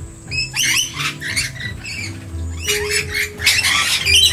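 Rainbow lorikeets giving short screeching calls, several in quick succession, over background music.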